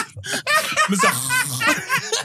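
Several men laughing hard together, in quick repeated bursts of laughter.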